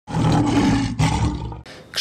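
Intro sting sound effect under a glitching logo: a loud, noisy roar with a low drone, in two swells, fading out about a second and a half in.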